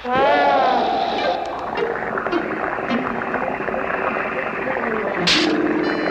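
Cartoon sound effects of a fantasy time machine as its stop button is pressed: a wavering tone that bends down and back up at the start, then a dense whirring clatter, with a sharp bright burst about five seconds in.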